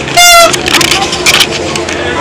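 A child's plastic toy horn blown once: a short, loud, buzzy honk lasting about a quarter of a second near the start, over background voices.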